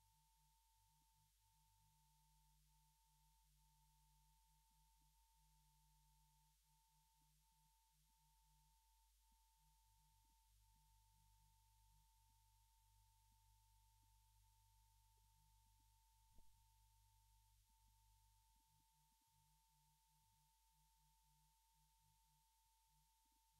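Near silence on an old film soundtrack, with only a very faint steady high tone and a low hum, and one soft tick about two-thirds of the way through.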